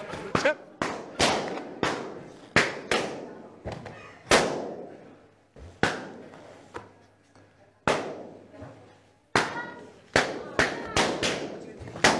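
Latex party balloons bursting one after another as they are stepped on, more than a dozen sharp bangs at uneven intervals, each with a short echo, coming thick and fast near the end.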